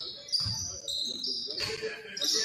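Basketball shoes squeaking on a hardwood gym floor in short high squeals, with a ball bounce about half a second in and voices around the gym.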